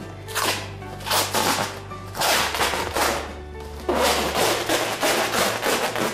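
Kitchen wrap film being pulled off its roll and crinkled over a soap mould, in a string of loud rustling rips, over background music with a steady bass.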